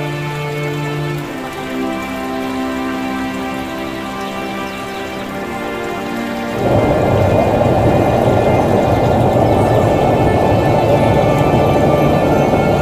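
Background music of held, sustained notes. About six and a half seconds in, a loud, steady rush of fast water over rock cuts in suddenly and drowns it out.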